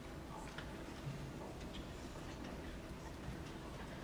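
Hushed auditorium ambience: a steady low room rumble with scattered faint clicks and rustles while the band waits to start.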